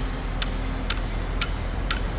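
Sharp, evenly spaced clicks, about two a second, over a steady low hum.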